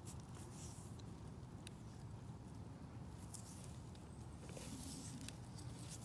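Quiet background with a faint low rumble and a few soft, scattered ticks.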